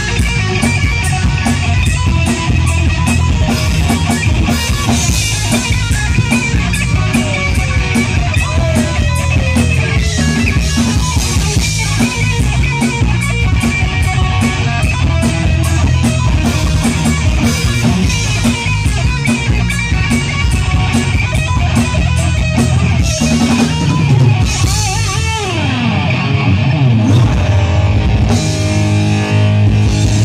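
Live hard-rock band playing an instrumental passage through the PA: distorted electric guitars, bass and a drum kit, with no vocals. The guitar bends notes, with a long falling bend near the end.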